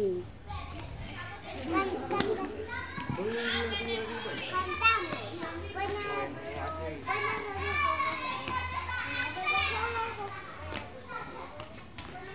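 Young children's voices chattering and calling out over each other while they play, high-pitched and continuous, with no clear words.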